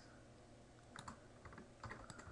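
Near-silent room tone with a few faint computer keyboard and mouse clicks, a cluster about a second in and another near the end.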